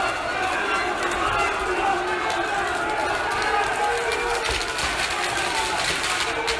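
A street crowd in a brawl, many voices shouting and yelling at once, with a few sharp knocks scattered through.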